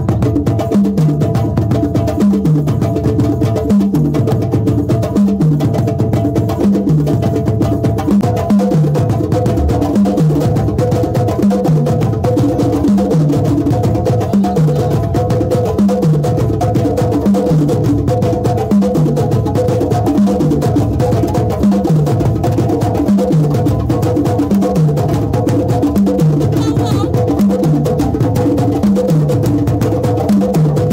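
Sabar drums played with a stick and the bare hand in a steady ensemble rhythm. A deep stroke that slides down in pitch recurs about once a second under faster, sharper strokes.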